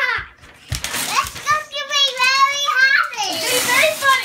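A young child's high-pitched voice: a drawn-out, wordless excited cry held for about a second and a half in the middle, among shorter bits of children's voices.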